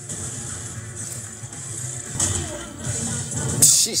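A TV episode's soundtrack: quiet background music with sound effects, including a short noisy burst about two seconds in and a louder, sharp noisy burst near the end.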